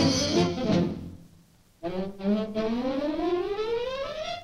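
Cartoon orchestral score led by brass: a loud hit at the start that dies away within about a second, a brief gap, then a long rising slide in pitch.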